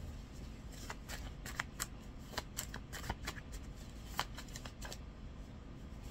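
A stack of paper cards shuffled by hand: a quick, irregular run of card flicks and snaps that starts about a second in and stops about a second before the end.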